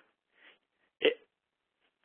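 A pause in a man's speech over a webinar recording: a faint breath, then the single short word "it" about a second in.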